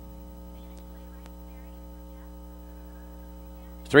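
Steady electrical mains hum, a buzz of several fixed, evenly spaced tones, with the announcer's voice starting at the very end.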